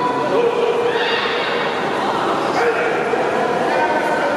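Crowd of spectators and coaches shouting and cheering, many voices overlapping and holding calls.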